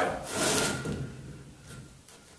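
A long wooden boat keel section scraping and rubbing against a wooden workbench as it is tipped onto its side, loudest about half a second in and fading out by about a second and a half.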